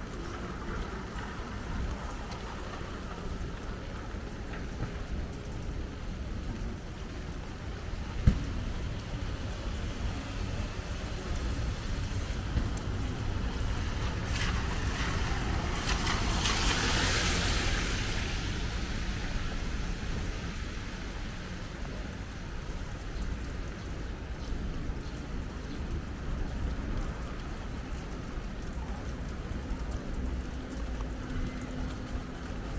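Rainy city street ambience, with a steady low rumble and the hiss of wet pavement. Midway through, a minivan drives past on the wet road, its tyre hiss swelling and fading over a few seconds. A single sharp knock comes about 8 seconds in.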